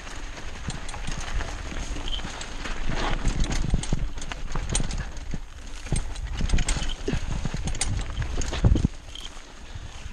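Diamondback Hook mountain bike rattling and clattering as it rides over rough dirt singletrack, a fast irregular run of knocks and clicks from the bike and trail, with dry brush scraping past. The clatter eases off sharply near the end.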